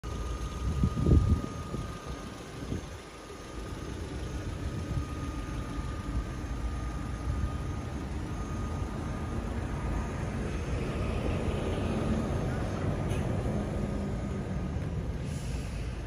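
Steady outdoor road traffic rumble, swelling from about ten seconds in as a heavier vehicle passes. A man says "yeah" and laughs about a second in.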